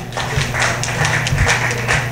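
Audience applauding: a dense patter of clapping that starts suddenly at the beginning and carries on steadily.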